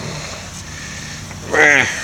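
Steady background room noise with no distinct tool or metal sounds, then a short spoken word or grunt from a man's voice about one and a half seconds in.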